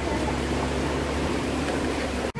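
Safari ride truck driving along, its engine running with a steady low drone and a steady hum under road noise.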